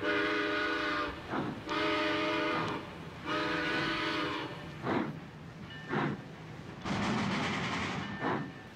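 Cartoon steam locomotive whistle blowing three long chord-like blasts, then several short chuffs of steam and a longer one near the end as the train starts off.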